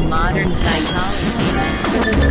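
Experimental synthesizer noise music: short squealing tones glide and fall over a dense low drone, with a burst of high hiss in the middle.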